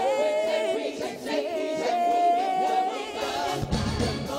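Gospel choir singing without accompaniment, with one voice holding a long steady note in the middle. Bass and drums come back in near the end.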